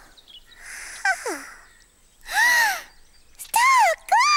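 Two high-pitched, bird-like squawking calls, each rising and falling, about a second apart, the second louder, after a short falling squeak and a soft hiss.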